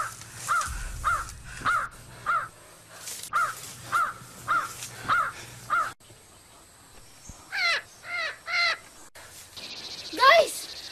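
A bird calling over and over, about ten short calls evenly spaced a little over half a second apart. After a pause, three longer calls come near the end.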